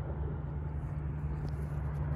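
Mini bike's small engine idling steadily with a low, even hum.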